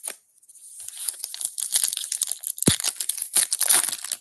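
Foil wrapper of a 2024 Topps Big League baseball card pack being torn open by hand, a dense crackling rip and crinkle that starts about half a second in, with one sharp snap about two-thirds of the way through.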